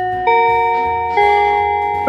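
School bell chime: bell-like tones struck one after another about a second apart, each note ringing on under the next, signalling that class is about to begin.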